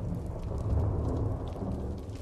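A deep, steady rumble, like distant thunder, with faint crackles above it.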